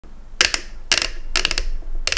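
Clicking from the parts of a DJI RS2 camera gimbal being worked by hand: three quick bursts of several sharp clicks, about half a second apart.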